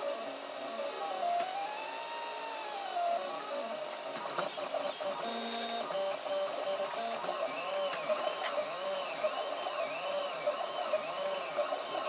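FDM 3D printer's stepper motors whining as the print head moves, the pitch rising and falling in smooth arcs as it traces curves. The arcs are slow at first and become quicker, about two a second, in the second half.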